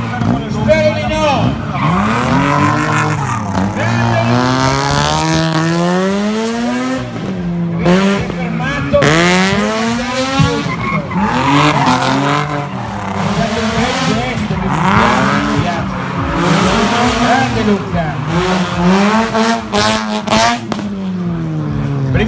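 Drift car's engine revving hard and falling back again and again, its pitch swinging up and down every second or two, with tyres squealing as the car slides.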